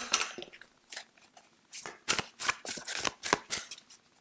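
A deck of tarot cards picked up and shuffled by hand: a short rustle at first, then a quick run of crisp card snaps and flicks in the second half.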